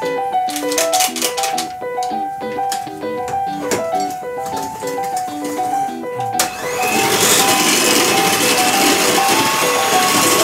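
Background music with a steady melody; about six seconds in, an electric hand mixer is switched on with a brief rising whine and then runs steadily, its beaters churning a runny egg and yogurt batter in a stainless steel bowl.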